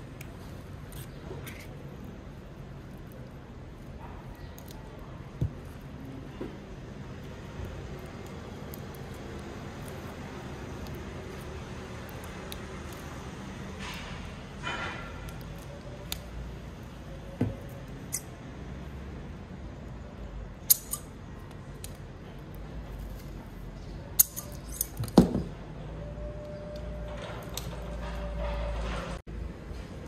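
Quiet workshop room tone with scattered short knocks, clicks and rustles from handling a plastic-wrapped inflatable pipe-repair packer, with a low rumble near the end.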